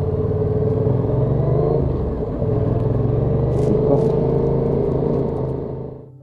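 Yamaha XSR700's parallel-twin engine running steadily while riding. Its note dips briefly about two seconds in, then carries on, and the sound fades out at the end.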